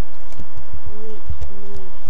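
Keyboard keys clicking as text is typed. About a second in, two short, low, steady hooting notes sound one after the other, the second a little longer.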